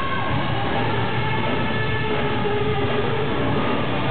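Rock band playing live and loud, with long held notes, a few of them sliding slowly in pitch, over a steady low band. The sound is dull, with no top end.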